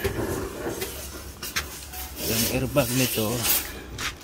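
Irregular rubbing and scraping noises, with a brief stretch of a man's voice from a little after two seconds in.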